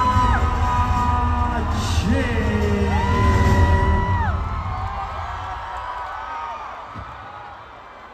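Loud concert sound-system music with a heavy bass beat, fading out over the second half, under a crowd of fans screaming and whooping in long held cries that thin out near the end.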